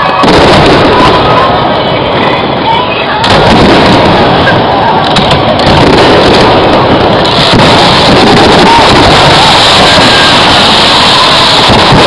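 Aerial firework shells bursting one after another in a dense, loud barrage, with people's voices mixed in.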